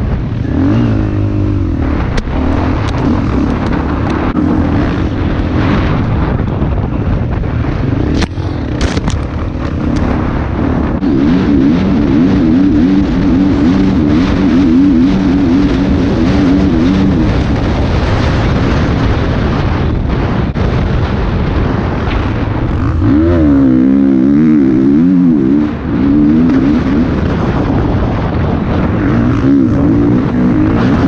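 Dirt bike engine heard from the rider's helmet, its pitch rising and falling constantly as the throttle is worked over a bumpy sand trail, with a wider rev up and back down near the end. A steady rush of wind noise runs under it, and a few sharp ticks come about a third of the way in.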